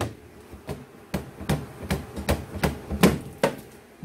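Footsteps on a loose floor panel in a 1996 Blue Bird school bus, a quick, irregular series of knocks under each step: the panel is not screwed down.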